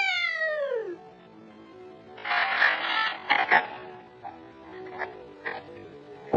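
A child's voice making a long wail that slides down in pitch, then rustling and a few sharp clicks from a phone being handled and moved about.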